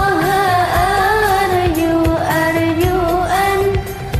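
A sholawat (Islamic devotional song): one voice sings long, ornamented, wavering notes over a steady drum beat. The voice breaks off briefly near the end.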